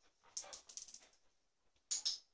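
A dog moving about at a wicker toy basket. There is a quick run of light clicks and rustles about half a second in, and a sharper, louder rattle near the end as its head goes into the basket.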